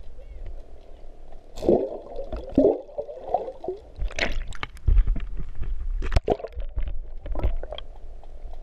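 Water sloshing and gurgling around a camera held just under the surface, with bubbles and irregular splashes and knocks scattered through.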